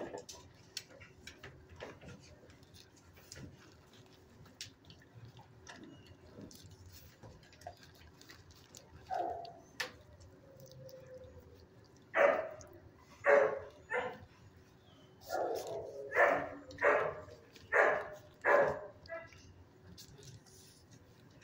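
A dog barking, about eight short separate barks over the second half, in a shelter kennel; before that only faint clicks.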